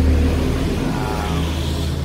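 A motor engine running nearby: a steady low rumble.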